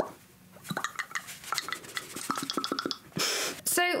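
Small heart-shaped glass jar clinking and tapping as it is handled and set down, a string of light clicks and short clinks.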